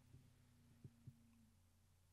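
Near silence: faint room hum, with two soft ticks about a second in.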